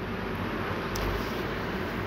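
Onions, mint and ginger-garlic paste frying in oil in a pot, a steady sizzle.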